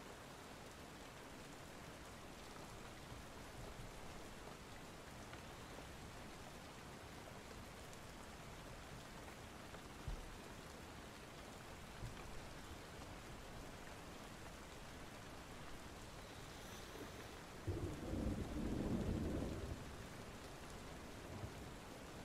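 Steady rain ambience, with a low rumble of thunder swelling and fading about three quarters of the way through.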